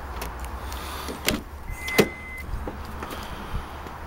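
Honda S2000's door being opened: a latch click, then a louder clunk about two seconds in with a brief high steady tone, over a low steady hum.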